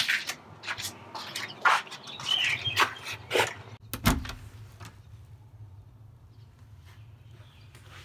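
Front door lock and handle being worked: a run of short clicks and rattles, then a single heavier clunk about four seconds in.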